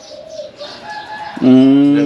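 A man's long hummed "mmm" of agreement, starting about one and a half seconds in and held steady. Before it, only faint thin bird calls in the background.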